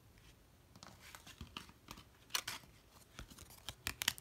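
Tarot and oracle cards being handled by hand: a scatter of short papery slides and taps as cards are moved and laid down on a wooden surface, the loudest about halfway through and again near the end.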